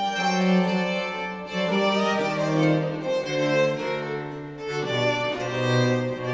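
Baroque chamber music from a small period-instrument ensemble: a recorder and violin play over a low bowed-string bass line. It is formal Baroque palace music.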